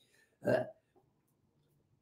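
A single short throat sound from a man, about half a second in.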